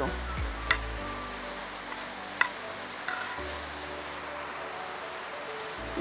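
Steady hiss of rain falling, with two light clicks of a metal spoon against a plate, one about a second in and one past two seconds. Quiet background music underneath.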